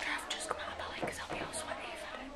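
Hushed, whispered talk between people at close range.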